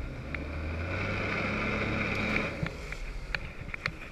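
Jet ski engine revving up for about two seconds, then dropping back, as it drives water through the hose to the flyboard's nozzles.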